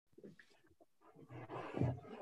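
Indistinct, low, muffled voice sounds, louder near the end.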